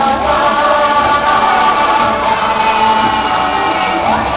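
Live stage-show music with several voices singing, holding long sustained notes, heard from the audience in a large theatre.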